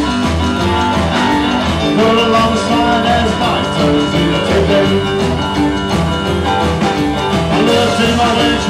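Rockabilly band playing live, with upright bass, drum kit and electric guitar keeping a steady, driving beat.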